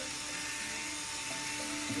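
Cordless drill with a paddle mixer running at a steady speed, stirring epoxy paint in a plastic bucket, its motor giving a steady whine.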